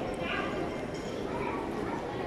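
Indistinct talking of several people over the general background noise of a busy shopping mall.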